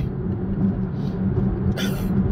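Steady low road and engine rumble inside a car cruising at highway speed, with a short hiss near the end.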